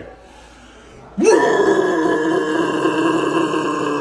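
A man's extreme-metal vocal scream: after a quiet first second it bursts in with a sharp rise in pitch, then holds steady and harsh for about three seconds before cutting off.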